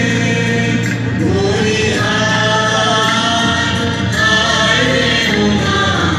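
A song sung by a group of voices together with musical accompaniment, its notes long and held.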